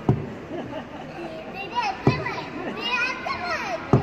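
Young children's high-pitched voices and squeals at play, busiest in the second half, with three sharp knocks: near the start, about two seconds in, and at the end.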